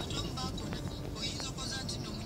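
Steady engine and road rumble of a vehicle moving in slow, dense city traffic among minibus taxis and motorcycles, with scattered voices.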